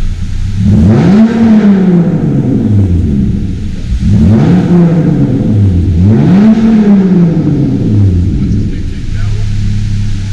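A car engine revved three times from idle, each rev climbing quickly and then falling slowly back toward idle. The first comes about a second in, the others at about four and six seconds, and the engine settles back to idle near the end.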